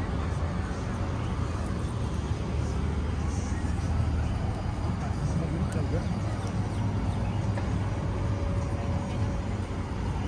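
Outdoor city ambience: a steady low rumble of distant traffic, with indistinct voices of passers-by.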